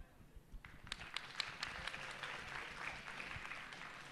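Audience applauding, a fairly faint patter of many hands that starts about half a second in and slowly tapers off.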